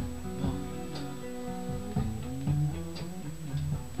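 Fender Telecaster-style electric guitar picked fingerstyle, playing a soul riff of single notes and small chord shapes with slides between some of them.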